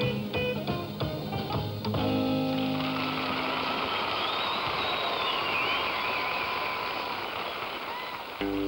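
Rockabilly band with electric guitar, upright bass and drums playing the last bars of a number, ending on a held chord about two seconds in. Then a noisy wash of audience applause and cheering, with a wavering whistle over it, fills the rest.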